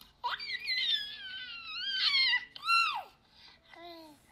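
High-pitched baby squeals: a long wavering squeal, then a short squeal that rises and falls, followed by a few faint sounds.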